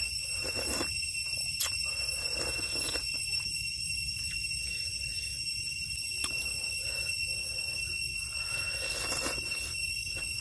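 Close-up eating sounds: slurping rice porridge from a large spoon and chewing, with a few sharp clicks, the longest slurp near the end. Underneath runs a steady high-pitched chorus of night insects.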